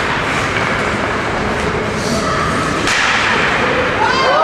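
Indoor ice hockey game: steady rink noise of skates, sticks and spectators, with a single sharp crack of a shot about three seconds in, followed by louder shouting as a goal is scored.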